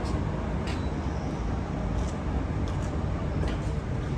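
Steady low rumble of outdoor street background noise, with a few faint clicks.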